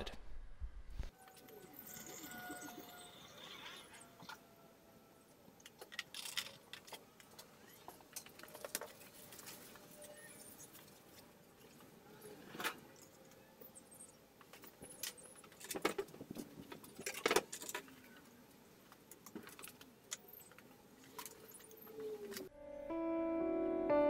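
Faint, scattered clinks and taps of laboratory glassware as the fractionating column and round-bottom flask of a distillation setup are handled and fitted, with a few sharper clinks in the second half.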